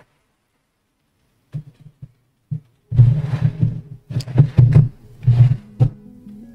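Irregular knocks and rustling of things being handled and moved about in a search. A few separate thumps come first, then a denser, louder run of them from about three seconds in.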